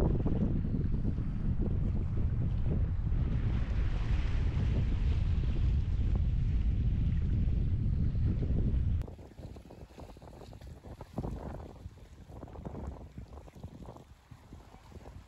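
Wind buffeting the camera's microphone: a heavy, steady low rumble that drops suddenly to softer, gustier wind about nine seconds in.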